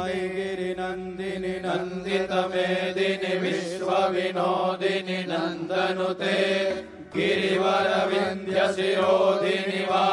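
Devotional mantra chanting sung over a steady drone, breaking off briefly about seven seconds in before carrying on.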